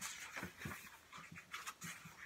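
Pages of a hardcover picture book being turned and handled: a faint run of short, irregular paper rustles and light knocks.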